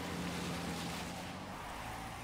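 Opening sound effects of a music video: a car driving, heard as a steady rushing noise over a low hum.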